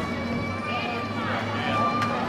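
Outdoor audience chatter, a low murmur of overlapping voices, with a faint steady high-pitched tone held through it.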